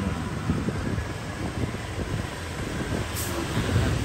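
Steady low rumble of a motorbike being ridden, its engine noise mixed with wind on the microphone.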